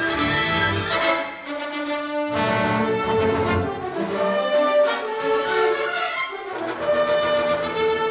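Symphony orchestra playing tense film-score music, brass to the fore with strings beneath, in held chords that change every second or two.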